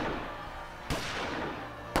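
Battle sound effects of gunfire: two sharp shots about a second apart, each trailing off in a long echo.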